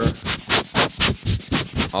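Rapid puffs of air from a hand-squeezed rubber rocket blower aimed at a Rode VideoMic Pro Plus shotgun microphone fitted with its furry windscreen, about four short whooshes a second.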